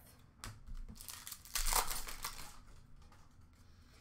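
Hockey trading cards being handled and sorted by hand: a few light clicks, then a short rustle of card and packaging about one and a half to two and a half seconds in.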